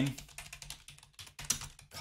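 Typing on a computer keyboard: a run of quick, uneven keystrokes.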